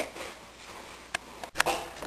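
A quiet room with two short, faint clicks, one about a second in and another about half a second later.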